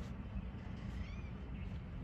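A faint high animal call, a short arched rise and fall of pitch about a second in, over a steady low outdoor rumble.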